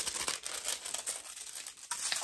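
Small clear plastic packet crinkling as it is handled, a run of light, irregular crackles.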